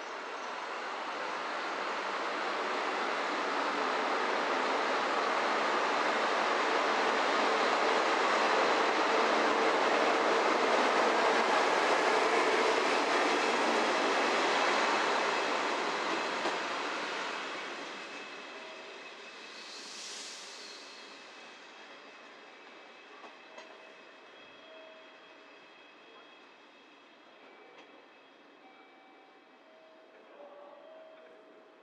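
A single-car train running along the station platform past close by: its running noise builds, is loudest for several seconds, then fades as the train pulls away down the line. About twenty seconds in there is a brief high hiss.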